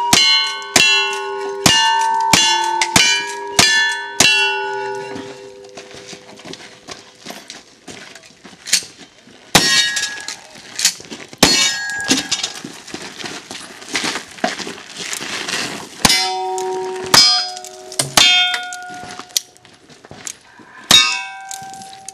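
A quick string of rifle shots, about two a second, each followed by the ring of a steel target being hit. After a pause of several seconds come more scattered shots, then from about sixteen seconds in another run of shots with steel targets ringing.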